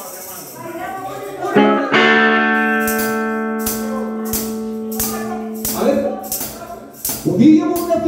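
Live band between phrases: a single chord rings out and is held for about four seconds, over light percussion strikes about one a second, with a voice before and after it. Near the end the band comes back in with voice.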